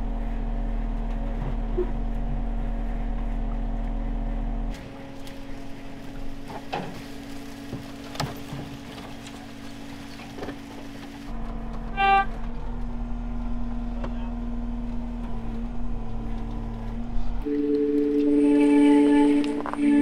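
Vehicle engines running while a winch drags a pickup up the bank, with background music laid over. A few sharp snaps of branches against the truck come partway through.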